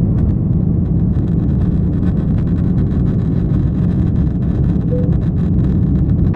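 Passenger jet's engines and runway rumble heard inside the cabin during the takeoff roll: a loud, steady, low rumble.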